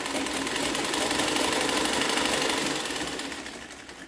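Freshly oiled Singer treadle sewing machine running under foot pedalling, its mechanism giving a fast, even clatter that dies away over the last second or so as the treadle stops.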